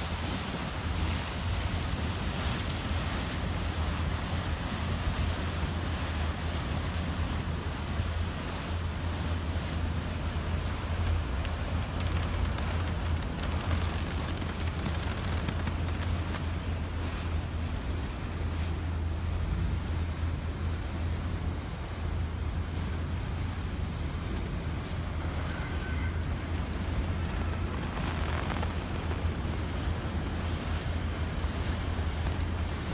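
Nuclear icebreaker's hull pushing through sea ice, a steady churning noise with a strong low hum underneath.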